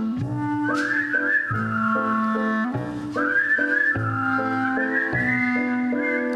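Whistled melody, wavering and sliding between notes, over sustained chords from a stage piano and double bass that change about every second.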